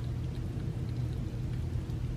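Cats eating canned tuna wet food from plates: faint wet chewing and licking over a steady low hum.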